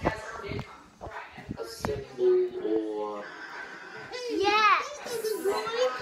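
Children's voices while playing, with unworded shouts and a loud, high, wavering squeal about four and a half seconds in.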